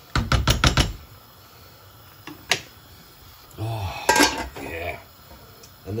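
Stainless steel pan and lid clattering over a pan of mussels: a quick run of sharp clicks and knocks in the first second, then a single knock about two and a half seconds in, as the lid goes on.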